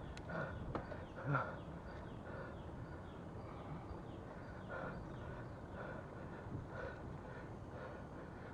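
Bicycle riding along a concrete forest path: a low, steady rolling and wind noise, with a couple of brief knocks in the first second and a half. Faint high chirps repeat in the background throughout.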